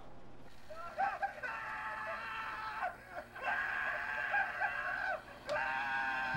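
Recorded sound effects played through a model train layout's speakers: three long, high-pitched cries, like screaming.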